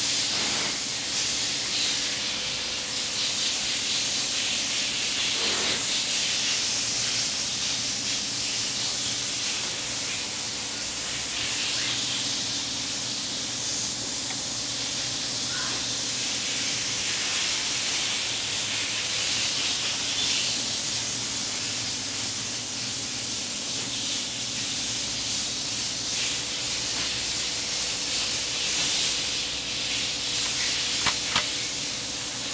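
Steady hiss with a faint low hum underneath, and a few faint clicks.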